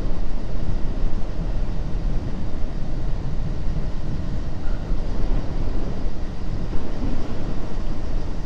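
Motorcycle riding steadily at cruising speed: the engine runs evenly under a constant rush of wind on the microphone.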